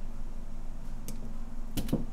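Side cutters snipping a length of soft solder wire: a faint click about a second in, then a sharp double click near the end as the jaws close.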